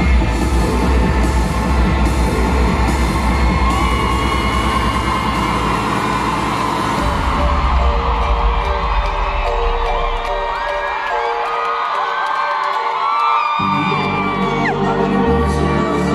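Loud live music through an arena's sound system, with a heavy bass beat and an audience cheering and shouting in high, gliding whoops. About ten seconds in the bass drops out for a few seconds, then the beat comes back in suddenly.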